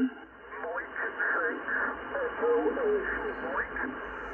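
A distant amateur radio station's voice received on 40-metre lower sideband and played through a ham transceiver's speaker: narrow, thin-sounding speech over a steady hiss of band noise.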